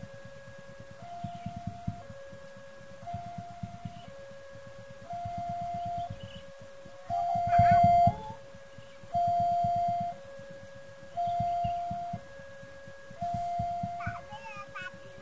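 Railway level-crossing warning alarm sounding its electronic two-tone signal, a higher and a lower tone alternating about once a second, the warning that a train is approaching the crossing.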